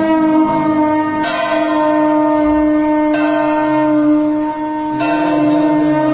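Aarti bells ringing, struck several times, over a steady held tone that runs throughout.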